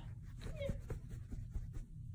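A grey tabby kitten gives one short, high mew about half a second in, followed by a few soft clicks.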